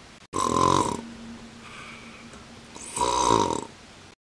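A person's voice imitating snoring: two loud snores about two and a half seconds apart, with a faint steady hum between them.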